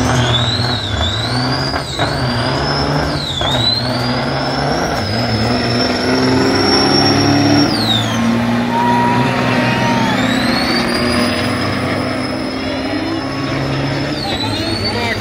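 Turbo-diesel semi truck engines at full throttle in a drag race, with a high turbo whistle that climbs, dips briefly three times, then falls away about eight seconds in. A second truck's whistle rises through the last few seconds.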